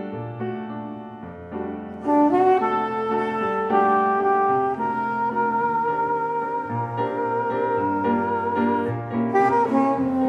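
Soprano saxophone playing a melody over grand piano accompaniment in a contemporary jazz duo. It starts softly, grows louder about two seconds in, and holds one long note through the second half.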